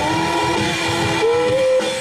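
A live rock band with young singers, electric guitars, bass, keyboard and drums playing a hard-rock song; the melody moves in long held notes, stepping up to a higher note a little after halfway through.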